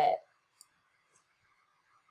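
A word of speech ending, then one faint computer mouse click about half a second in, then very quiet room tone.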